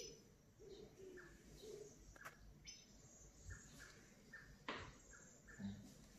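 Near silence with faint, short bird chirps now and then, and a couple of soft clicks.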